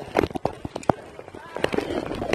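A rapid, irregular run of sharp clicks and knocks, with a person's voice near the end.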